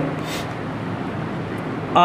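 Steady background room noise, an even hiss, with a brief soft hiss about a quarter second in.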